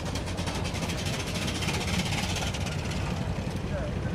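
Replica 1899 steam car's steam engine chuffing as the car drives along: a rapid, even train of exhaust beats over a steady hiss of steam.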